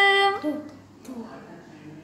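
A voice holds one long drawn-out vowel of praise that ends about half a second in. Softer voice sounds follow, with a light tap about a second in.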